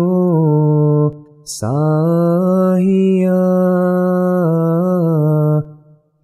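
Solo male voice reciting a ginan, an Ismaili devotional hymn, with no accompaniment. A sung phrase ends about a second in, and after a brief pause one long held note follows, gently ornamented, until shortly before the end.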